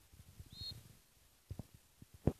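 Quiet outdoor ambience with a few dull low thumps, two close together about one and a half seconds in, and one short, high chirp about half a second in.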